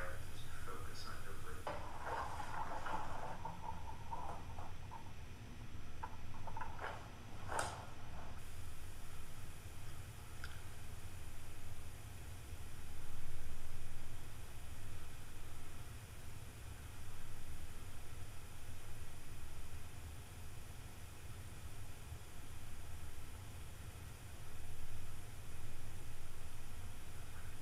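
A low steady hum, with faint, indistinct voice sounds and a few light clicks in the first eight seconds.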